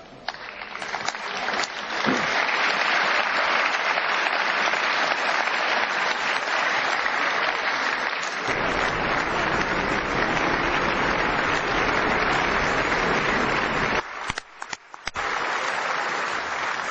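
Long applause from a large audience, swelling over the first two seconds and then holding steady. It drops away abruptly about fourteen seconds in.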